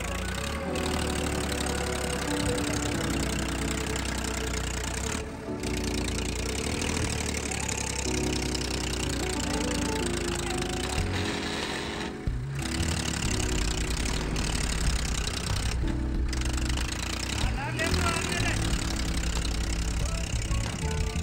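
A song with singing over the low, steady running of a Massey Ferguson 1035 DI tractor's three-cylinder diesel engine, working under load to pull a laden trailer. The music briefly drops out a few times.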